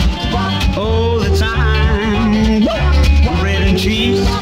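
Music from a 45 rpm pop single playing: a band with a steady beat and heavy bass.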